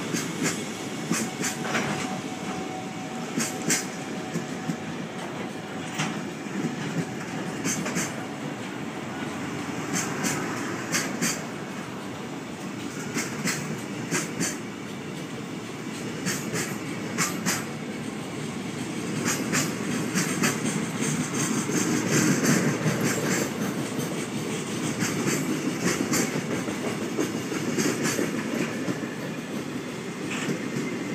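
Container flatcars of a freight train rolling past at speed, with a steady rumble. The wheelsets clack over the rail joints, mostly in quick pairs every couple of seconds.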